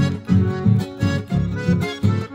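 Instrumental chamamé played by an accordion-led folk ensemble, with a steady, bouncing beat of low chords about three to a second under the melody.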